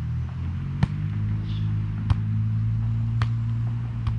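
A volleyball being struck by hands during a rally: three sharp slaps about a second apart, over a low steady motor hum.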